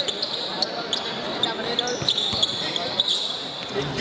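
Ambience of an indoor basketball game: a steady murmur of crowd chatter in a large hall, with the ball bouncing and scattered sharp taps from play on the court.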